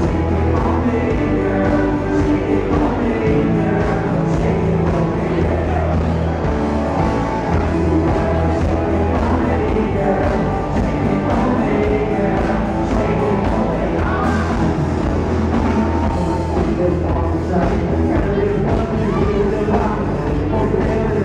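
A live country band playing a song with singing, electric guitars and drums, picked up from the dance floor of a large club.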